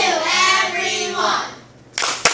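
A group of children's voices singing a drawn-out line together, fading out about a second and a half in.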